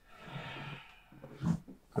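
A person blowing out a long, soft breath, then a short sharp crack about one and a half seconds in from a chiropractic thrust on the upper (thoracic) spine, the joint releasing as the air goes out.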